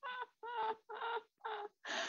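A woman laughing: a string of about five separate high-pitched 'ha' pulses.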